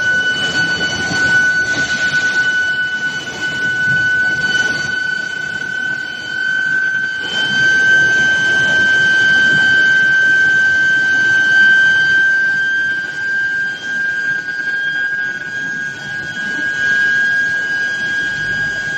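Medium-frequency induction billet heater giving a steady high-pitched electrical whine that creeps slightly up in pitch, over the running noise of the heating line's roller drives.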